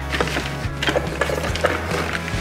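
Cast-iron tortilla press being squeezed shut and opened on a wooden cutting board, a few short knocks and clacks of metal and wood, over background music with a steady bass.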